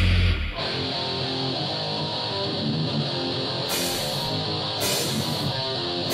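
Heavy metal song: the full band drops out about half a second in, leaving an electric guitar playing a riff alone. A cymbal is struck about once a second in the second half.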